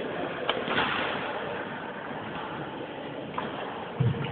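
Steady sports-hall background noise with a few sharp taps, about half a second in and again just past three seconds.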